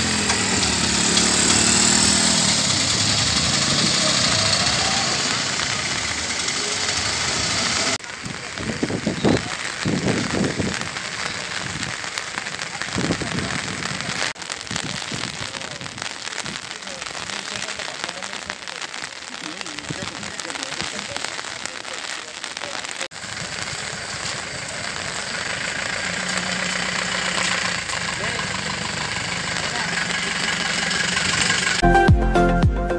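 Bus engines running on a rain-soaked road, over steady road and rain noise. The sound changes abruptly about eight and twenty-three seconds in, and a steady engine note comes back near the end.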